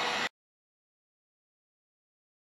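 Electric heat gun blowing steadily while melting a solder-and-seal wire connector, cut off abruptly about a third of a second in, then dead silence.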